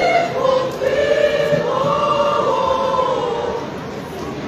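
Choir singing in parts, holding long sustained notes that fade slightly near the end.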